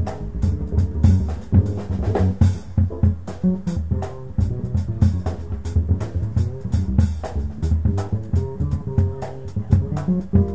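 Small jazz group playing live: upright bass plucked in a low line over a drum kit with steady cymbal and drum strokes, and Rhodes electric piano chords in the middle.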